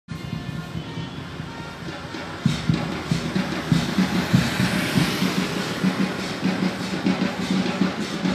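Drums beaten in a steady rhythm, getting louder about two and a half seconds in, with a motorcycle passing in the middle.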